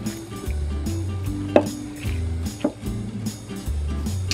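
Background music with a steady bass line. A few short, sharp sounds come over it, the loudest about one and a half seconds in, then again near three seconds and at the very end.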